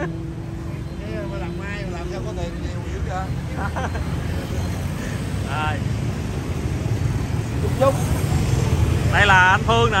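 Street traffic: a steady low rumble of passing motorbikes and cars, swelling slightly toward the end.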